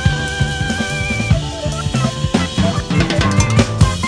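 Instrumental jazz-rock band recording: a busy drum kit, with bass drum, snare and a flurry of strokes near the end, plays over a bass line and held melody notes, one with vibrato.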